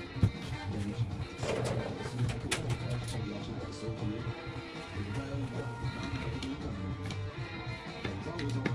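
Background music with guitar, with a few light clicks scattered through it.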